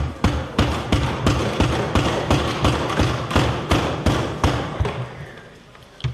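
Members of the House thumping their desks in approval. Many overlapping thuds, several a second, that die away near the end.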